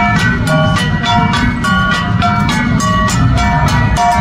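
An ensemble of gangsa, flat brass Cordillera gongs, beaten in an even rhythm of about four strikes a second. Each gong rings on at its own pitch, so the notes shift from stroke to stroke.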